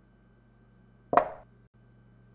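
Chess-move sound effect: a single short plop of a piece being set down on the board, once, about a second in, over a faint steady hum.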